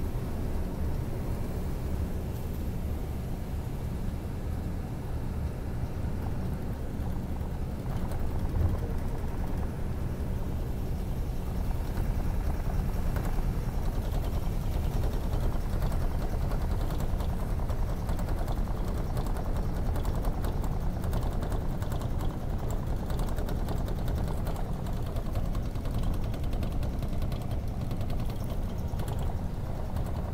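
Steady deep road and engine rumble inside a moving coach bus at highway speed, with faint light ticks and rattles in the second half.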